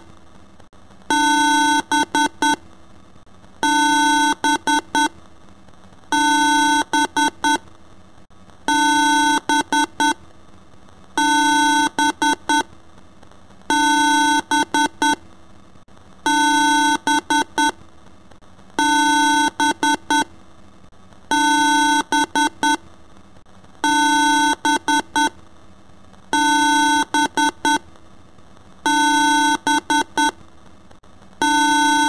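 Synthesized electronic beeping in a strictly repeating pattern: one long beep followed by three short beeps, recurring about every two and a half seconds.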